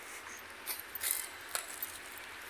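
Faint footsteps while walking: a few scattered light clicks and crunches over a low steady hiss.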